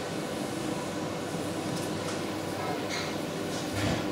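Steady mechanical hum and hiss of a professional kitchen's background, with a couple of faint light taps near the end.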